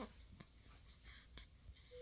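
Near silence: faint, scratchy rustling comes and goes, with two soft clicks.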